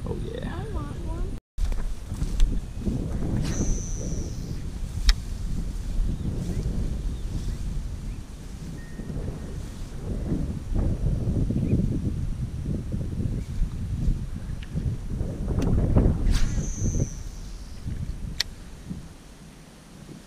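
Wind buffeting the microphone by a pond. Twice a fishing cast is heard: a short high whine from the reel, then a sharp click about a second later.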